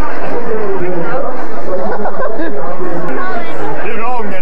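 Several people talking at once, overlapping voices and chatter with no single clear speaker.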